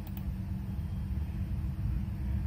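Steady low background hum, a faint rumble with light hiss, with no clear events.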